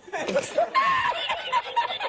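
A man laughing hard, in a long unbroken run of high-pitched laughs.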